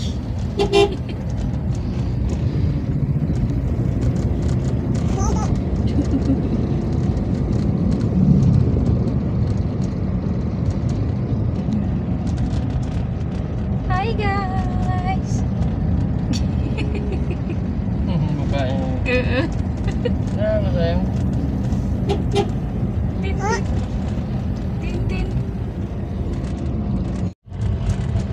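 Steady low rumble of engine and road noise inside a car's cabin while it drives, with a few short high-pitched calls on top. The sound cuts out briefly near the end.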